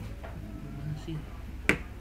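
A single sharp click about three-quarters of the way through, over a faint low murmur of voice.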